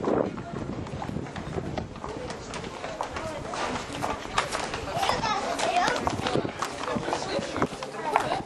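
Footsteps and handling knocks from a camcorder carried at a walk, with indistinct voices rising and falling, mostly in the second half.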